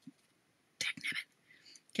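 A woman's voice saying a single quiet, breathy word about a second in, then a faint whisper-like breath; the rest is near silence.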